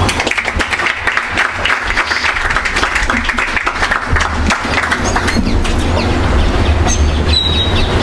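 Audience applauding: many hand claps in a steady run.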